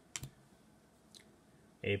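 Stiff game cards clicking against each other as they are handled in a hand-held stack: a sharp double click just after the start and a faint click about a second in.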